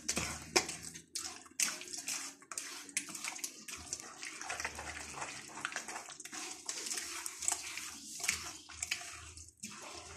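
A hand squishing and squelching through wet gram-flour (besan) pakora batter in a bowl, in irregular wet strokes.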